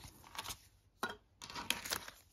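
Polymer banknotes rustling and crinkling as a stack of notes is handled and spread out, in a few short bursts.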